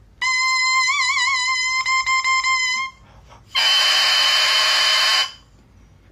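Oboe double reed blown on its own, off the instrument: a high, thin sustained note that wavers briefly, then breaks into a few short tongued notes. After a short pause comes a harsher, raspy buzz lasting nearly two seconds.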